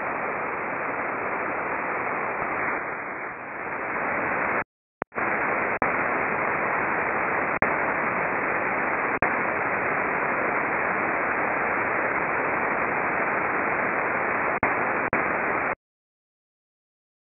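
Open-squelch hiss from an SDR receiver in AM mode on the aviation band with no station transmitting: steady static with nothing above about 3 kHz. It drops out briefly about five seconds in, a few short clicks break it, and it cuts off suddenly near the end as the squelch closes.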